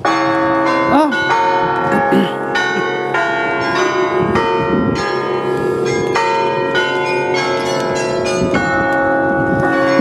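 Tower carillon bells playing a tune close by: many bells struck one after another in quick succession, their ringing overlapping. The sound is loud and sets in suddenly.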